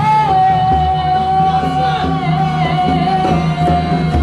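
A woman's singing voice holds one long high note that dips slightly near the end, over acoustic guitar accompaniment.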